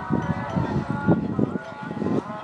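Background chatter of people talking, with irregular low muffled rumbles on the microphone.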